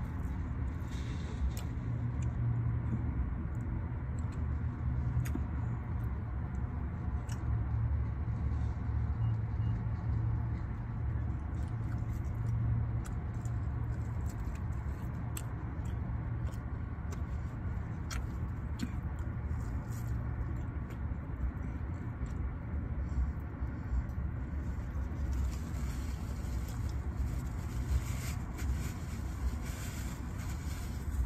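Steady low hum heard inside a parked car's cabin, typical of the engine idling with the climate fan running. Scattered small clicks and rustles of eating from a takeout container are heard over it.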